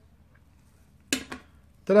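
A quiet second, then a man saying 'ta-da' with a drawn-out second syllable.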